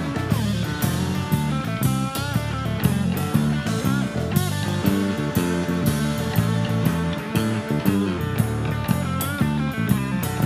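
Live electric blues-rock band without vocals: a Strat-style electric guitar plays lead lines with bent, wavering notes over a steady bass line and drum kit.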